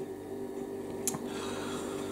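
A steady low hum in a quiet room, with a single sharp click about a second in.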